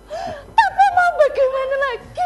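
A woman's high voice in a drawn-out, sing-song exclamation without clear words, ending on a long held note.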